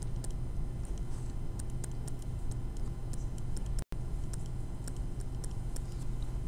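Stylus tapping and scratching on a tablet screen during handwriting: small, irregular clicks over a steady low hum, with a brief dropout to silence about four seconds in.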